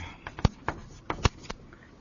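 Several short, sharp taps, the two loudest about three quarters of a second apart, over faint room hiss.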